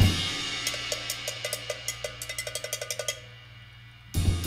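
Drum kit played with sticks: a loud hit dies away, then a run of light, ringing metallic taps speeds up over about two seconds and breaks off, leaving a short lull near the end.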